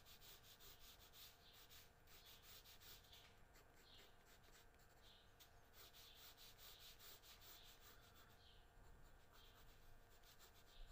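Faint scratching of a red pencil stroking across grey drawing paper, in soft repeated strokes.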